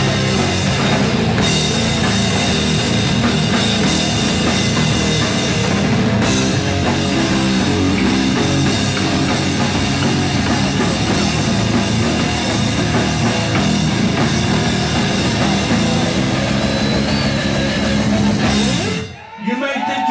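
Live rock band playing loud, with electric guitars through Marshall amplifiers and a drum kit; the song stops abruptly about nineteen seconds in.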